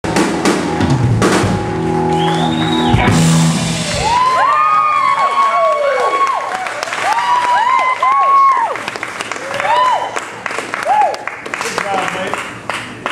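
Live rock band of electric guitar, bass and drum kit ending a song on a held final chord with drum hits, stopping about four seconds in. After that, audience members whoop and cheer in short rising-and-falling calls.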